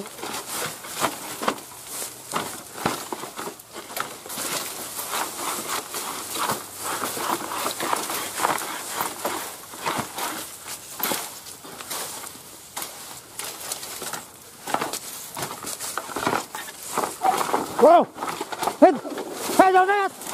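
Dry bamboo stems and dead leaves rustling and crackling as someone pushes through a dense thicket, with a few short pitched calls or voices near the end.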